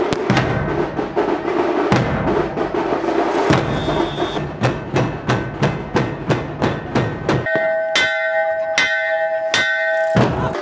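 Large barrel dhol drums beaten hard in a fast, steady rhythm. About seven and a half seconds in the drumming drops out, and a hammer strikes a hanging metal cylinder three times, each blow ringing on like a bell.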